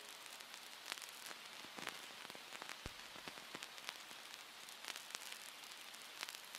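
Faint steady crackling hiss dotted with many small sharp clicks, with no music or voice.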